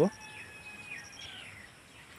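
Faint outdoor background with a bird giving a few short, thin gliding calls, over a high repeated chirping.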